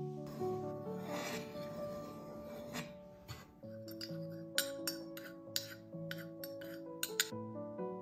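Gentle background music with held notes. Over it, a soft scraping in the first few seconds, then a run of about ten light clinks from about four seconds in: a metal spoon tapping and scraping against a ceramic cup as flour is scooped into a bowl.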